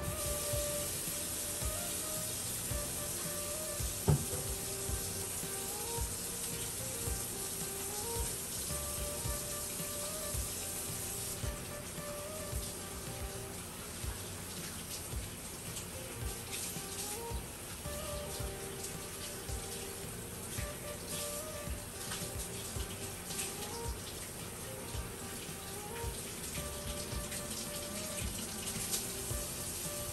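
Water running steadily from a tap into a sink as hands are washed, under soft background music.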